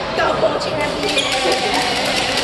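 Badminton rally: rackets striking the shuttlecock with short sharp hits and shoes squeaking on the court floor, over voices and play from neighbouring courts in a large hall.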